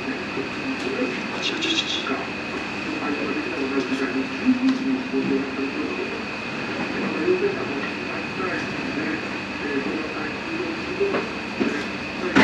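Restaurant room sound: a steady hum with a constant high whine and muffled television speech in the background, and a few brief soft crackles as a large hot naan is torn apart by hand.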